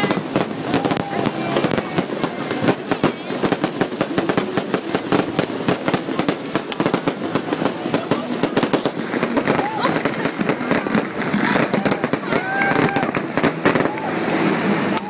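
Fireworks crackling and banging in a dense, rapid run of sharp cracks, with people's voices calling out over them.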